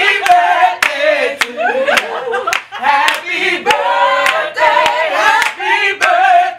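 A group of people singing together, with hands clapping in time at roughly two claps a second.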